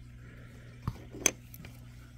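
Two light clicks, about a second in and shortly after, from small metal parts of an opened Babyliss Lo-Pro hair clipper being handled, over a steady low hum.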